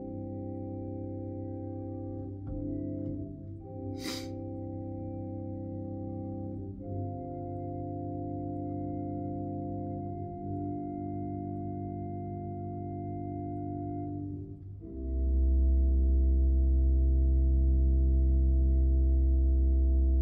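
Organ playing slow sustained chords that change every few seconds, with a brief sharp click about four seconds in. About fifteen seconds in a deep, much louder bass note enters beneath the chord and holds.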